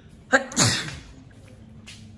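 A person sneezing once, about half a second in: a sharp catch, then a loud, noisy blast that falls in pitch and dies away within half a second.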